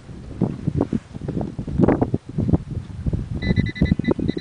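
Wind buffeting a camcorder microphone, with irregular thumps and rumbles of handling as the camera is swung around. Near the end a rapid run of short, high-pitched chirps starts up.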